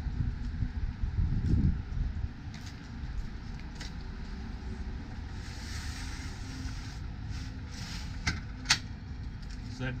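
Light metal clicks and a brief sliding scrape from the aluminium arm of a manual RV awning being handled, with one sharp latch-like click near the end, over a low wind rumble.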